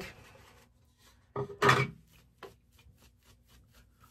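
Shaving brush lathering soap on a stubbled face: quick, evenly repeated bristle strokes, about five or six a second, with one louder, brief rush of noise about a second and a half in.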